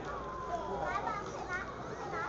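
Indistinct background chatter from spectators in a hall, with high-pitched children's voices calling out now and then.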